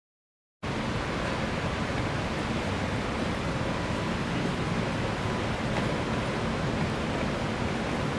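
Steady outdoor background noise, an even rushing sound that cuts in suddenly about half a second in and holds without change.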